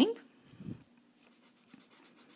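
A cotton swab rubbing faintly over colored-pencil shading on paper, blending the pigment.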